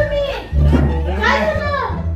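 Voices speaking over background music with a steady low bass.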